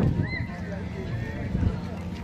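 Indistinct voices of people talking, with a sharp knock right at the start, over a low steady hum.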